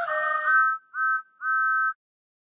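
Steam locomotive chime whistle, two notes sounding together, blown three times: long, short, long. The first blast overlaps the tail end of music.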